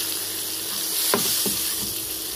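Boiled eggs and small potatoes sizzling as they fry in hot oil in a pan: a steady high hiss, with two short sounds just after a second in.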